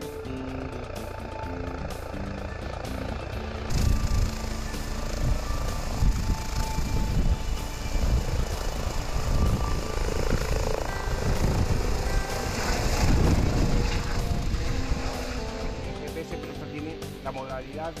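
A low-hovering Eurocopter EC135 helicopter: loud rotor noise and rushing downwash from about four seconds in, easing off near the end, over background music.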